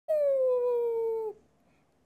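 A pet animal's single long whine that falls slowly in pitch, lasting just over a second, then stops.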